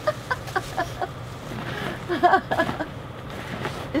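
A person laughing in short, rapid bursts, twice: once at the start and again about two seconds in.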